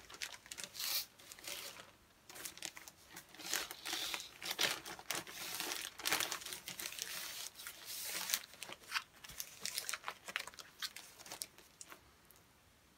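Vinyl record sleeve handled and rustled as an LP is slid back into it, making a long run of irregular crinkling and rustling that stops shortly before the end.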